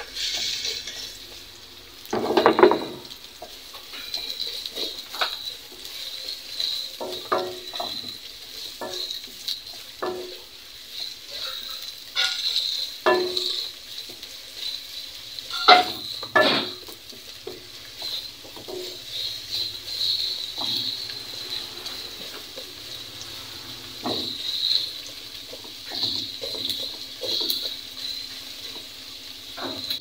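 Sliced onions sizzling as they fry in a pot, stirred with a spatula that scrapes and taps against the pot over and over, with louder knocks about two and a half seconds in and again around sixteen seconds.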